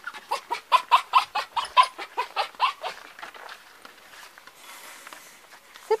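A dog panting rapidly, about five quick breaths a second, for the first three seconds; then it goes quieter.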